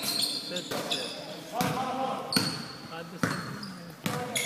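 A basketball bouncing on a hardwood gym floor four times, about a second apart, with high, brief squeaks of sneakers on the floor and players' voices echoing in the gym.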